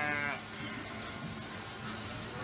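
A sheep bleats once, briefly, near the start, followed by a steady low background of shed noise.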